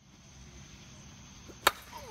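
2020 Onyx Ignite two-piece composite slowpitch softball bat striking a softball once, a single sharp crack about one and a half seconds in.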